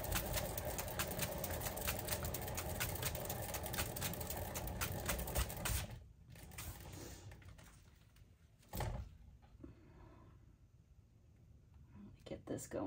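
Hand-spun canvas spinner turning under a wet acrylic pour canvas, rattling with fast, steady clicks as it spins. It stops suddenly about six seconds in, and a single knock comes near nine seconds.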